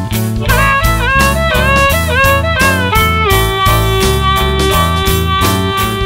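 Rock music, instrumental break: a lead electric guitar plays bending notes over a steady drum beat and bass, then holds one long note through the second half.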